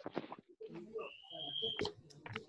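Computer keyboard keys clicking as text is typed. In the second half a thin, high whistle-like tone is held for almost a second, rising slightly, and stops abruptly.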